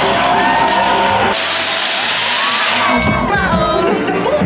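Loud live concert music played through the PA, with crowd noise. About a second and a half in, a loud rushing hiss cuts in for about a second and a half while the bass drops out, then the music comes back in full.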